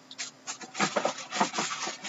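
Handling noise: an irregular run of short rubbing and scraping scuffs as objects are moved about beside a desk.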